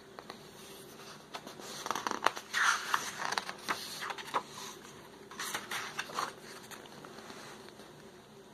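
Paper rustling and crackling as a picture-book page is turned by hand, in two bursts, the first and longer one about two seconds in and a shorter one around six seconds.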